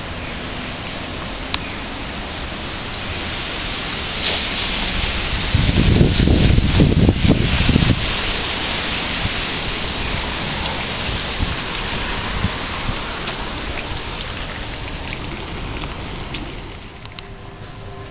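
Steady hiss of rain, with a louder low rumble from about six to eight seconds in; the hiss drops near the end.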